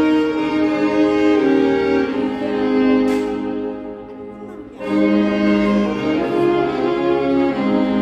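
Alto saxophones playing a slow melody in long held notes together, over a backing track. The playing thins out a little past the middle and comes back in full just before the five-second mark.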